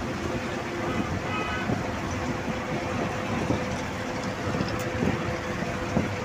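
Road and engine noise heard from inside a moving vehicle at speed: a steady rumble with a constant hum running under it.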